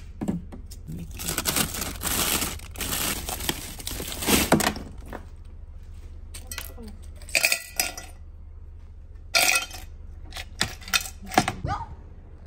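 Frozen packages rustling and crinkling in a freezer drawer for a few seconds, then ice cubes dropping into a cup in several separate clinks.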